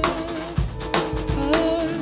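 Rock band playing an instrumental passage: Pearl drum kit beating with cymbal crashes over held electric guitar notes.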